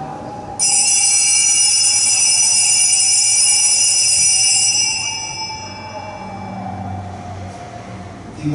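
Altar bell rung by an altar server at the consecration of the Mass. It strikes suddenly about half a second in and rings with a bright, high cluster of tones that fade away over about five seconds.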